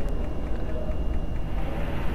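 Steady low background rumble with no distinct event: no shot, impact or voice.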